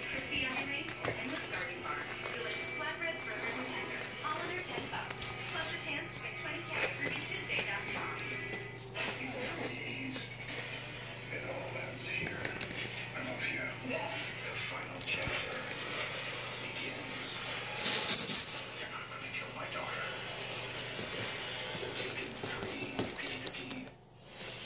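Television playing in the room: music and voices throughout, over a steady low electrical hum. About three-quarters of the way through comes a short, loud burst of hissing noise.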